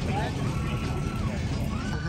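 Steady low rumble of outdoor background noise, with a brief snatch of voice near the start and a faint held tone in the middle.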